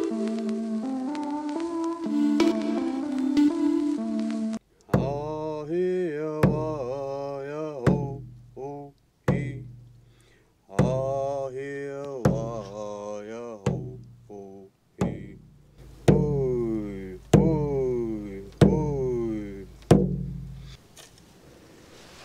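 Background music for the first few seconds. Then a man sings an Indigenous paddle song, striking a hand-held frame drum with a beater about once every second and a half. His voice slides down after each beat, and the beats come a little quicker near the end.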